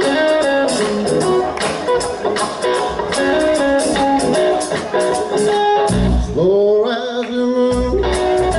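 Live blues-rock band playing, led by electric guitar: a run of quick picked notes, then about six seconds in a long note that slides upward and wavers over a deep bass note.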